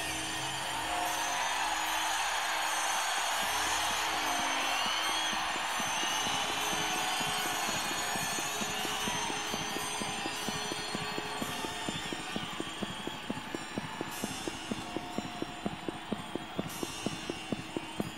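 A hazy electronic wash with slow gliding tones fades into the sound of clocks ticking, about three or four ticks a second. The ticking grows more prominent toward the end: it is the ticking-clock introduction to a rock song, played in concert.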